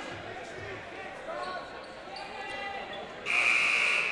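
Gym scoreboard buzzer sounding one loud, steady blast of nearly a second near the end, cutting off suddenly: the horn from the scorer's table calling in a substitution.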